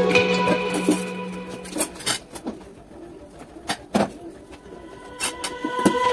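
Light instrumental background music that fades to a quiet break after about a second, with a few scattered sharp clicks, then builds back up near the end.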